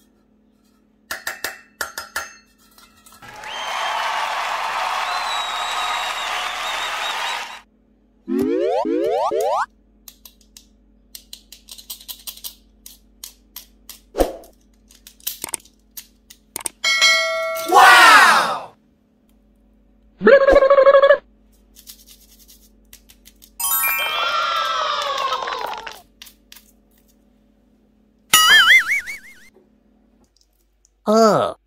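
A string of cartoon-style sound effects: a long shimmering sparkle, a rising boing, chimes that fall in pitch and a single bell ding. Between them come light clicks and taps from a metal muffin tin being handled.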